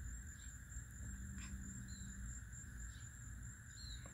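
Faint steady drone of insects: a continuous buzz in a fairly high register with a thin, higher whine above it, over a low rumble. Two short high chirps come about halfway through and near the end.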